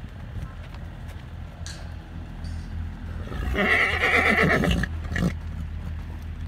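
A horse whinnying: one loud call of about a second and a half, starting about three and a half seconds in, followed by a short extra note.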